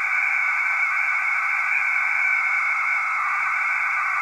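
QO-100 satellite narrowband beacon received on an RTL-SDR through a Sky dish's Visiblewave LNB, played as a steady tone over receiver hiss. The beacon's note shifts as the cheap LNB drifts off frequency; it should be rock steady.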